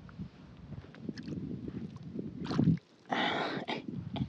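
Faint rustling and handling noise, then after the sound drops out for a moment near three seconds, a short burst of water sloshing as a hand moves in shallow pond water.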